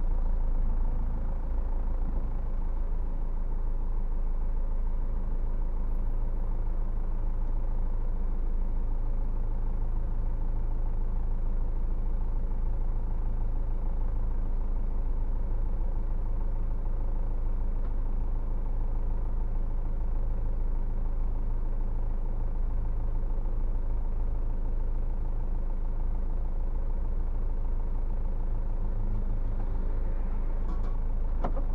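A vehicle's engine idling in stopped traffic, heard from inside the cab as a steady low hum.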